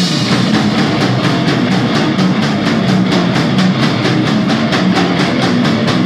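Death metal and grindcore power trio playing live: distorted guitar and bass over fast, evenly paced drumming.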